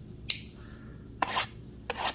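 A shrink-wrapped cardboard trading-card box being handled: a sharp click a little way in, then a short scratchy rub just past halfway and another near the end.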